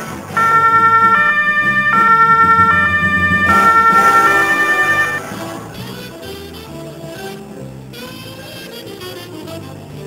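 Two-tone police siren sounding over background music, stepping between a high and a low note about every three quarters of a second, loud for about five seconds and then cutting off, leaving the music.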